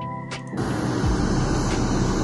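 Pink noise test signal from Smaart V8 played through the studio monitors. It is a steady, even hiss across the whole range that switches on suddenly about half a second in. It is the reference signal used to measure the room's response for a master EQ.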